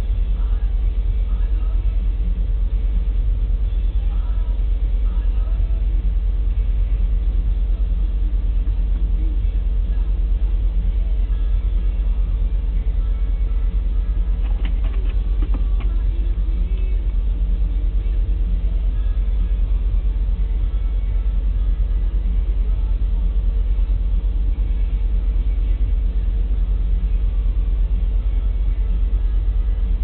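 Loaded coal hopper cars of a unit train rolling slowly past: a steady low rumble with a faint constant hum, and a few faint clicks about halfway through.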